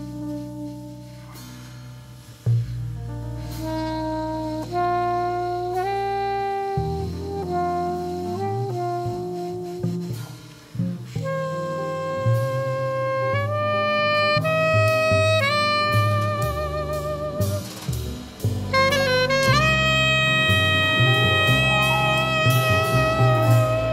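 Saxophone playing a slow jazz ballad melody in long held notes over grand piano and double bass; the melody climbs higher in the second half, with a wide vibrato on several sustained notes.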